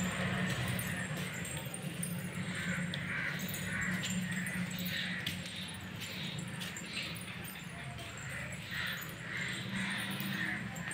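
An animal calling over and over in short, hazy calls, irregularly spaced at one to three a second, over a low steady hum.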